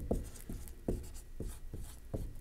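A marker writing: short, irregular strokes, a few a second.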